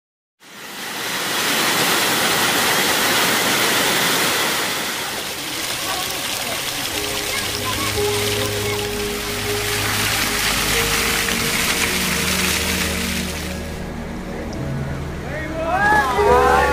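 Waterfall water splashing and rushing down a rock face, starting about half a second in and falling away near the end. Background music with long held notes comes in about midway.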